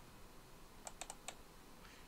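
A quick run of faint clicks from computer input, about a second in, against a quiet room.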